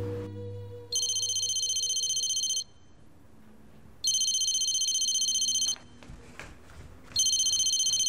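Electronic telephone ringer going off three times, each high, trilling ring lasting about a second and a half, about three seconds apart.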